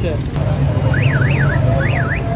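Soft-serve ice cream machine humming steadily as a cone is filled from its dispensing lever. From about a second in, a high siren-like warble sweeps quickly up and down several times over it.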